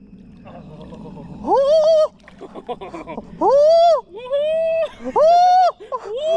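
A person's voice giving four high, drawn-out calls, each rising and then falling in pitch, about a second apart, starting about a second and a half in.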